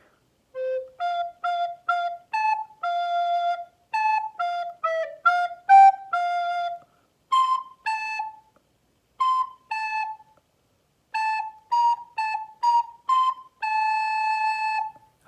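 Recorder playing a simple tune in short separate notes, with the falling two-note cuckoo call sounded twice in the middle and a longer held note at the end.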